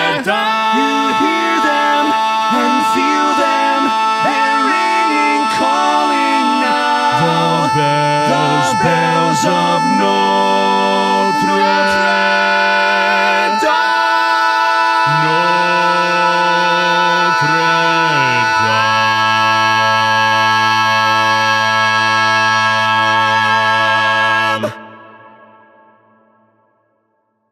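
Four-part barbershop harmony sung a cappella by one man multitracked on all four parts. One voice holds a single high note throughout while the lower voices move beneath it. About two-thirds of the way in, the lowest voice glides down into a final sustained chord, which cuts off suddenly near the end and leaves a short fading tail.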